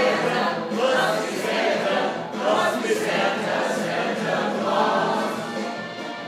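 A group of voices singing a Christmas carol together.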